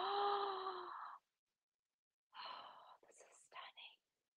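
A woman's drawn-out breathy "ooh" of delight, about a second long, followed after a pause by soft whispered, breathy sounds.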